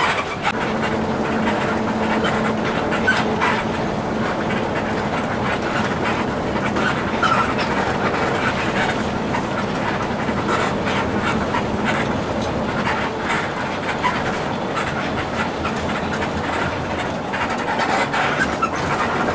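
Steady cabin noise inside a moving Mercedes-Benz 1521 intercity bus: engine and road noise with many small, constant rattles and clicks from the bus interior.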